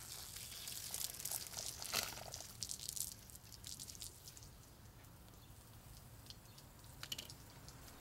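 Water running out of the open bleed valves on a backflow test kit's differential pressure gauge, purging air from the test hoses. A splashing hiss, louder for the first three seconds and quieter after, with a click about seven seconds in.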